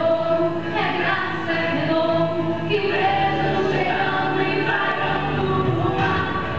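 A small women's choir singing a hymn together, holding each note for about a second before moving to the next.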